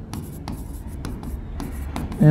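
Marker pen writing on a board: faint scratchy strokes broken by several light ticks as the tip touches down, over a low steady hum.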